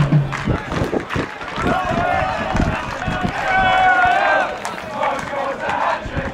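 Football supporters' voices in the stand: shouts and snatches of chanting, with one long, held call a little past halfway.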